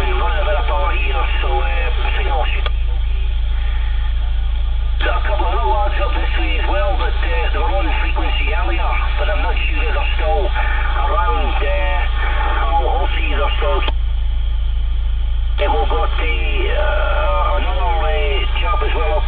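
Voices received over a CB radio, heard through its narrow, tinny speaker and not clear enough to make out words. The transmissions start and stop abruptly, with two short breaks, over a steady low hum.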